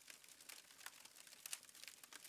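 Near silence with faint, irregular crackling clicks.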